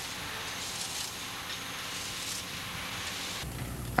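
Steady noise of heavy machinery on a work site, with no distinct strikes or knocks. About three and a half seconds in it gives way to a lower, quieter hum.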